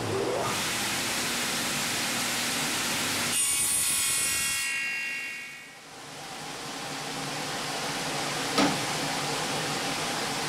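Table saw running, its blade cutting through a hardwood broom handle for about a second near the middle, then the saw running down. A steady machine noise builds again afterwards, with a short knock near the end.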